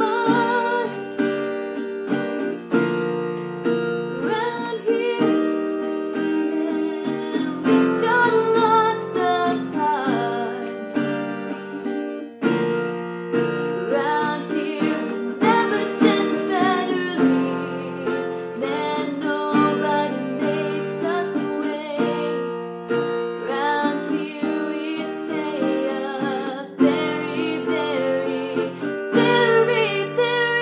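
Acoustic guitar strummed steadily with a woman singing over it.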